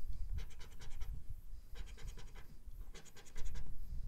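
A coin scratching the coating off a lottery scratch-off ticket in quick rasping strokes, in three short bursts with brief pauses between them.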